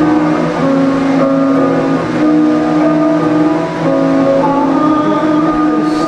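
Electric guitar played through an amplifier in an instrumental passage, with held notes and chords that shift every second or so.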